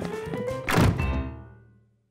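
Cartoon music with a heavy thunk of a door slamming shut about three-quarters of a second in, followed by a ringing chord that fades out to silence.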